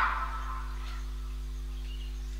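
Pause in the talk, filled by a steady low electrical hum with faint hiss from the recording, after the last word dies away at the start.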